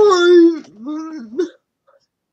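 A young person with cerebral palsy speaking in drawn-out, hard-to-make-out voiced sounds: one long loud utterance, then a lower, wavering one that ends about a second and a half in.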